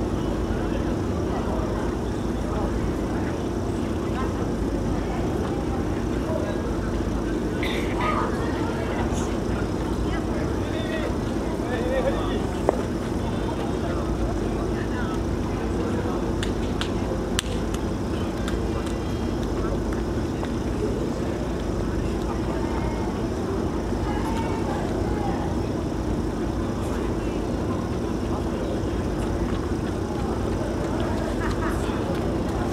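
Steady low drone with scattered voices, and two sharp clicks, one about twelve seconds in and one about seventeen seconds in.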